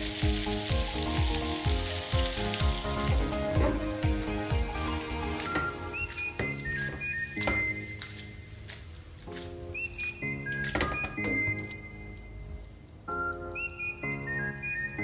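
Chicken frying in a pan, sizzling with a few spatula knocks on the pan as it is stirred; the sizzle fades out over the first five seconds. Background music with a simple melody plays throughout.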